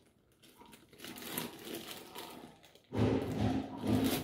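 Rustling, crinkling noise close to the microphone, growing much louder and heavier about three seconds in.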